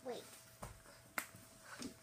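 A woman's voice says "wait", then come a few sharp clicks or taps, the loudest just past a second in.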